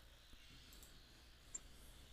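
Near silence, with a few faint computer mouse clicks; the clearest comes about one and a half seconds in.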